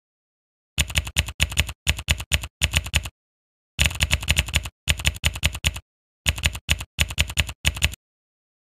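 Typing sound effect: rapid keystroke clicks, several a second, in three runs of a couple of seconds each separated by short pauses.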